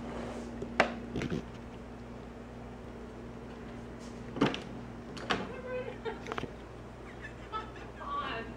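An interior door being handled: a few sharp clicks and knocks, about a second in and again around four and a half and five seconds in, over a low steady hum that stops about six and a half seconds in. Faint laughter follows near the end.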